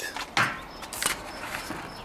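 Plastic cap pulled off the nozzle of a squeeze bottle of gear oil: a short rustle, then a sharp click about a second in.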